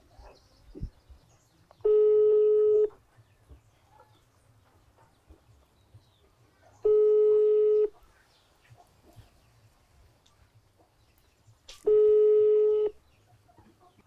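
Outgoing call ringing on a smartphone's loudspeaker: a ringback tone sounds three times, each a steady one-second tone, about five seconds apart. The call is not picked up.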